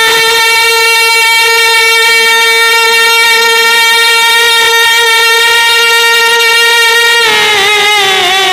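A man's singing voice holding one long, very steady high note in an unaccompanied naat for about seven seconds, then breaking back into a wavering, ornamented melody near the end.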